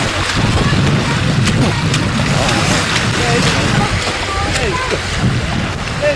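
Wind buffeting the camcorder microphone with a heavy rumble over small waves washing onto a shingle beach, with faint distant voices.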